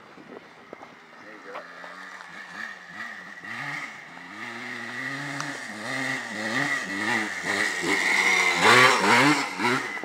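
Dirt bike engine approaching along the trail, its revs swinging up and down again and again with the throttle, growing louder and loudest about nine seconds in as it comes close.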